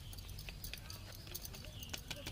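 Plastic sieve being shaken and tapped over a steel plate to sift gram flour: faint, irregular small taps and knocks, several a second.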